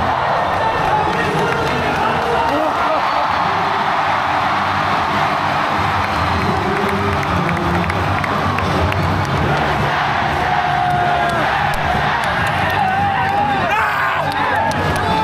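A large ballpark crowd cheering and shouting steadily after a walk-off win, with voices close by and stadium music underneath.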